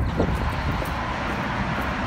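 Outdoor background noise: a steady low rumble with an even hiss over it.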